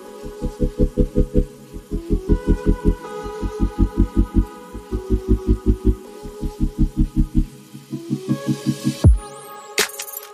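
Background music: a soft bass beat pulsing about four times a second under sustained chords. Near the end the beat drops out with a falling swoop.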